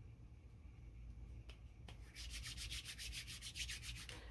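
Faint, quick rubbing strokes, about ten a second, starting about halfway in and stopping near the end, after a couple of soft clicks.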